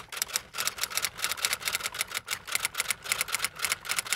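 A fast, slightly uneven run of sharp clacking key strikes, like typing, many per second.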